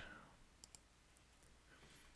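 Near silence with two faint computer mouse clicks in quick succession a little over half a second in.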